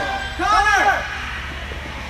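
A single shout, rising and falling in pitch, about half a second in, over the steady low hum and murmur of a large indoor sports hall.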